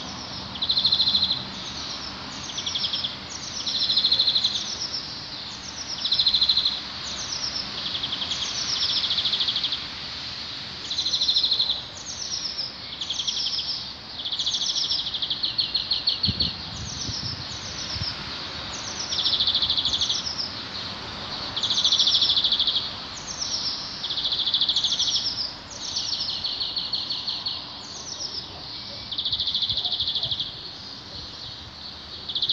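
A songbird singing over and over: each phrase is a high note that slurs downward, followed by a fast buzzy trill, repeating every second or two over a steady background hiss.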